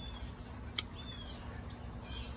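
A single sharp snip of small pruning scissors closing through a thin willow stem, about a second in.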